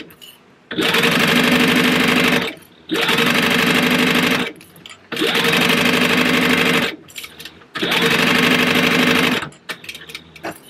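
Heavy-duty Sailrite Fabricator sewing machine stitching through zipper tape, vinyl and lining in four runs of about one and a half to two seconds each, with short pauses between them.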